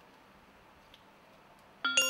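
Faint room tone, then near the end a struck chime that rings on with several steady tones: a transition sound effect.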